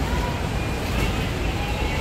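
Steady outdoor background noise of road traffic, with a low rumble of wind on the microphone.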